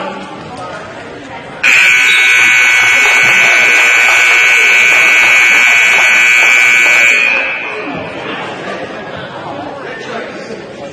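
Gym scoreboard buzzer sounding one long, loud, steady blast of about five and a half seconds, starting just under two seconds in, signalling the end of a wrestling period. Crowd voices in the gym carry on under it.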